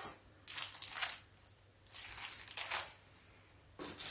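Plastic packaging and craft supplies rustling and crinkling as they are handled in a box, in a few short bursts.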